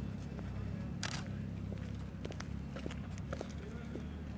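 Footsteps on a gravel road, heard as scattered crunches and clicks, with one louder scrape about a second in, over a steady low rumble and faint voices.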